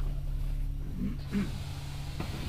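Cabin noise of an Alexander Dennis Enviro400 double-decker bus under way, a steady low engine and road drone. Two short vocal sounds stand out about a second in.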